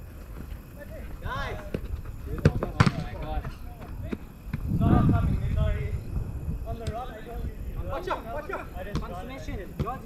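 Players shouting to each other across an artificial-turf five-a-side pitch, in short scattered calls with the loudest about halfway through. Two sharp knocks come close together about two and a half seconds in, typical of the ball being struck.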